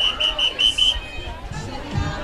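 Background crowd chatter of spectators, with a quick run of about six short, even high beeps in the first second.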